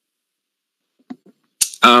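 Silence for about a second and a half, then a short sharp noise and a man saying 'um' near the end.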